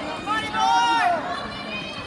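A spectator's loud, high-pitched yell, held for most of a second and dropping in pitch as it breaks off.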